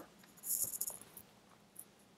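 Faint clicking of computer keys: a short cluster of clicks about half a second in and a single soft click near the end.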